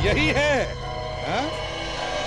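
A man's voice in a few short sounds with no clear words, over background music with a steady low drone.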